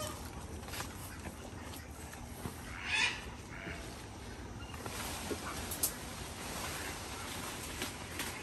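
Domestic waterfowl giving one short call about three seconds in, over a steady outdoor background with a few faint clicks.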